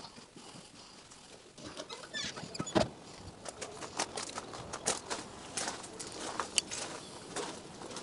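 Footsteps crunching on gravel at walking pace, starting about a second and a half in, as a short irregular string of sharp crunches and clicks.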